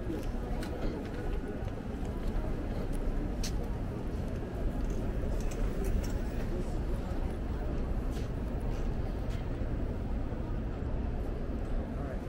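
Busy city street ambience: indistinct chatter from many people over a steady low rumble, with scattered sharp clicks.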